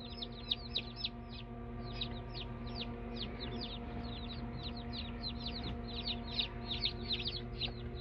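Newly hatched Buff Orpington chicks peeping: a busy stream of short, high peeps that slide downward in pitch, several a second, over a steady low hum.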